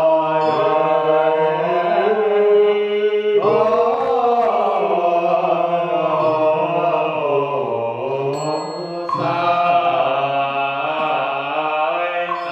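Chinese Buddhist liturgical chanting: long drawn-out sung syllables whose pitch slides slowly, moving to a new syllable about three seconds in and again near nine seconds.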